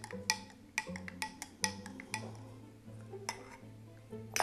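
Metal teaspoon clinking against a drinking glass while stirring a drink: a run of sharp clinks in the first two seconds and one more a little after three seconds. Soft background music plays under it.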